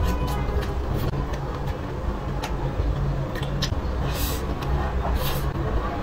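Close-miked mouth sounds of someone chewing a piece of braised green pepper: scattered wet clicks and smacks, with two short, louder wet bursts about four and five seconds in. A steady low rumble runs underneath throughout.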